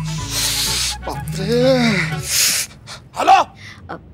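Edited sitcom soundtrack: a held music note with a hiss, then a voice-like exclamation that rises and falls and a short breathy hiss. A woman says 'hello' into a phone near the end.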